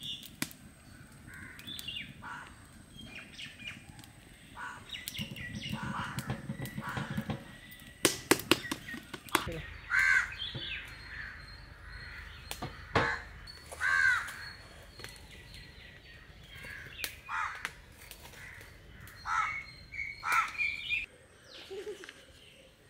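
Birds calling outdoors: repeated short, arched calls throughout, with a few sharp clicks of steel cooking pots and utensils midway.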